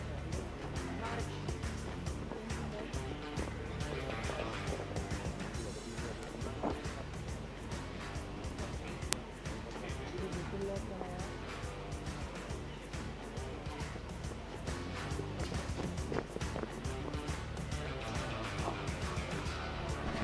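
Music playing at a low level, with indistinct voices underneath and a single sharp click about nine seconds in.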